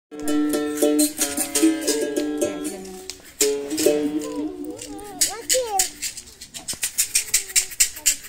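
Capoeira berimbaus ringing out, their struck wire notes stepping between a few pitches, with sharp rattling caxixi strokes throughout. The notes are struck afresh about three and a half seconds in, and voices come in around the middle.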